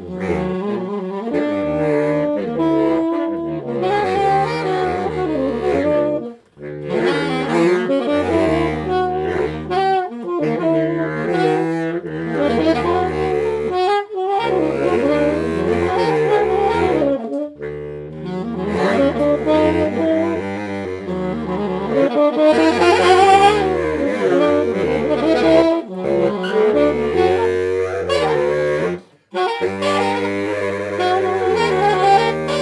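Baritone and tenor saxophones playing a duet: a low held line under a moving upper line, in overlapping sustained notes. There are two short breaks, about six seconds in and about a second before the end.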